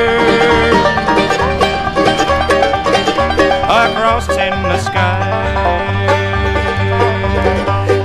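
Bluegrass band playing an instrumental break: a five-string banjo picking fast runs of notes over a bass stepping back and forth between two low notes.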